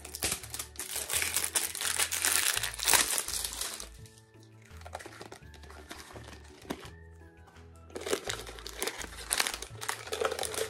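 Plastic packaging crinkling and rustling as a doll's cylindrical tube is unwrapped, in two busy spells with a quieter stretch in the middle, over background music.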